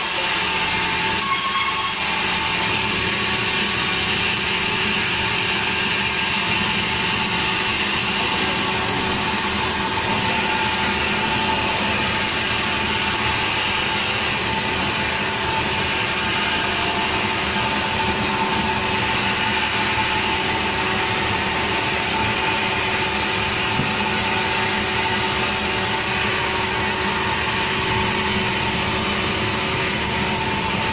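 Sawmill saw and its electric drive motor running steadily, a constant loud hum and whine with no break.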